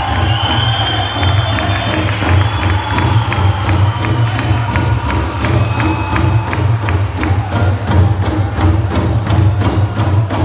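Powwow drum group beating a large shared drum in a steady, quick beat, with singers' high voices over it and a crowd cheering.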